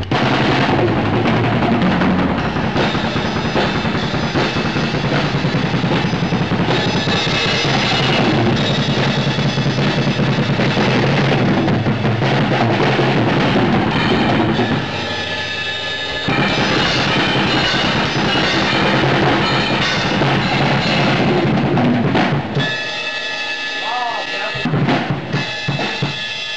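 Acoustic drum kit played hard and fast in a dense, continuous run of hits. It eases off briefly about fifteen seconds in, then thins to sparser, broken hits near the end.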